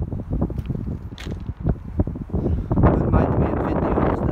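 Wind buffeting the microphone with a steady low rumble, over a few sharp crunches, plausibly footsteps on railroad-track ballast gravel, which grow denser near the end.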